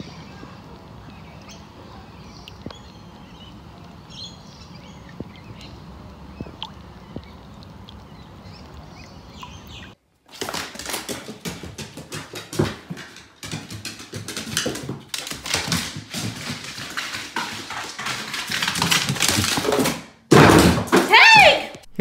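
Low background noise with faint small ticks and drips at first. About ten seconds in it gives way to a louder run of knocks and thumps on a wooden staircase as a dog moves on the stairs. A voice calls out near the end.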